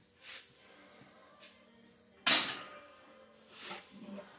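Loaded Duffalo bar being taken out of a power rack onto the front rack: a sudden loud noise about two seconds in that fades within half a second, then a sharp click near the end.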